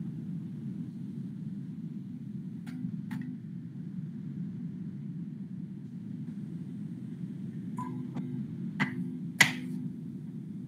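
Steady low background hum with scattered sharp clicks or taps: two around three seconds in, then four in quick succession near the end, the last one the loudest.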